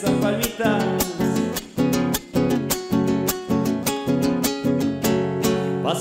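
Chacarera strummed on a nylon-string acoustic guitar, with sharp percussive strokes in the strumming rhythm and chords ringing between them.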